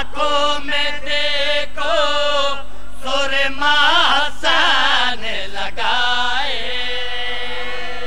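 A man's voice chanting a sung majlis recitation through a microphone and PA. The phrases waver and ornament in pitch, with short breaks between them, and it ends on a long held note near the end.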